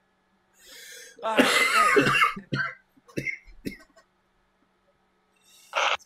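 A person laughing hard: a breathy start, then a loud burst of laughter about a second in that trails off into a few short breaths.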